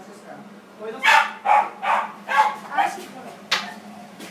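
Small dog barking five times in quick, evenly spaced yaps, followed by a single sharp click near the end.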